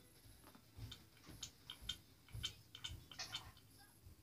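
Faint, irregular clicks and light knocks of hard plastic as a toy baby doll is handled and a toy feeding bottle is pressed to its mouth.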